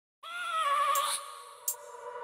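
Opening sound of a sped-up nightcore music track: one held, pitched, bleat-like note that wavers and falls a little in pitch over about a second, then fades. A short click follows near the end.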